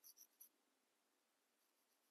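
Near silence, with a few faint, short scratches of a small paintbrush's bristles rubbing over an artificial bird head's bill in the first half second.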